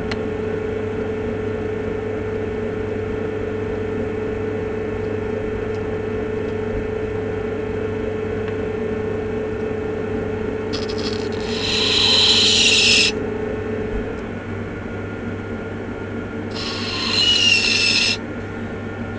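Electric potter's wheel running with a steady hum. Twice, about eleven seconds in for two seconds and again near the end, a metal tool scrapes against the base of the spinning clay mug with a harsh, hissing scrape.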